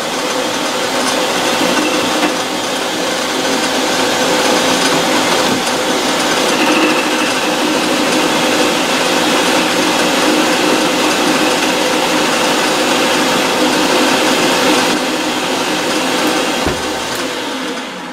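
Metal lathe running while a sharp-pointed carbide tool bit takes a light cut of a few thousandths off a round bar as the carriage feeds along: a steady machine whir with the hiss of cutting. It dies away near the end as the lathe stops.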